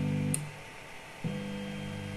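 3D printer stepper motors whining with a steady tone as the print head moves to the bed for a BLTouch probe. The probe pin clicks on touching the bed about a third of a second in and the motors stop, then they start again a second later.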